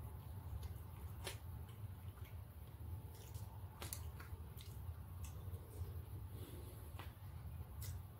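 A person eating quietly: scattered small clicks and wet mouth sounds over a steady low hum.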